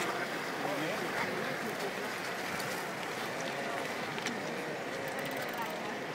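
River water rushing steadily over shallow rapids, with a mountain bike's wheels splashing through the water at the start.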